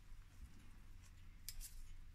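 A quick cluster of two or three faint, sharp clicks about a second and a half in, over a low steady hum.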